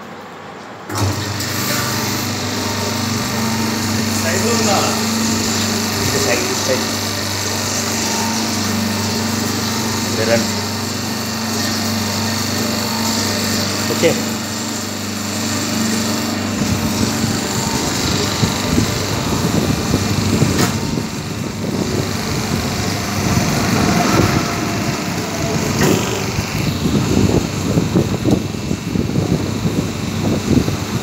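Electric motor and hydraulic pump of a paper plate press's hydraulic power pack starting abruptly about a second in, then running with a steady hum and hiss. About halfway through the low hum changes and the sound turns rougher and more uneven.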